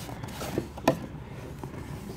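Cardboard Pokémon Elite Trainer Box being handled as it is opened, with rubbing and two light knocks, the sharper one just before a second in.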